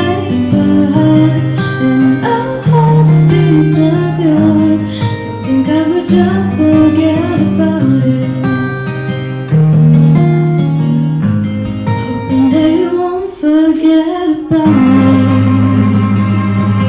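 A woman singing solo into a microphone over a guitar accompaniment with sustained low bass notes.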